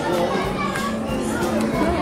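Children's voices and chatter, with music playing underneath.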